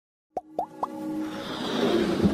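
Animated logo intro sting: three quick pops, each gliding up in pitch, about a quarter second apart, followed by a music swell that builds steadily.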